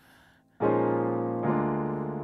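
A keyboard playing in a piano sound: after a brief near-silence, a sustained chord is struck about half a second in and changes to a new chord about a second later.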